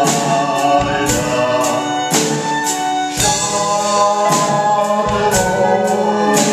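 Music from a stage musical: a choir singing long held notes without clear words over instrumental backing, with drum and cymbal hits about once a second.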